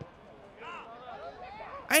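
Faint men's voices calling out on an outdoor football pitch, with a quiet background and no crowd noise.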